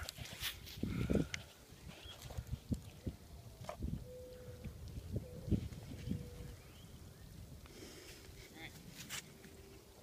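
Scattered soft knocks and rustles from a phone being handled close to dry grass, with a few brief clicks.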